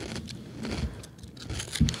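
Kettle-cooked potato chips being chewed close to a microphone: a scatter of faint crunches and crackles.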